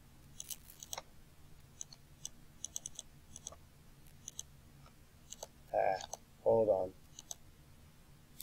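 Computer mouse buttons clicking, in single clicks and quick runs of two or three. Two short vocal murmurs come about six seconds in.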